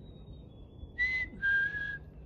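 A faint, high two-note whistled bird song, the second note a little lower, which the listener takes for a chickadee; then a person whistles the same falling two-note call back, much louder, lower and breathy.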